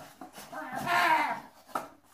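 A wordless voice sound, under a second long, about half a second in. Around it are light handling sounds from a cardboard box, with a sharp click near the end.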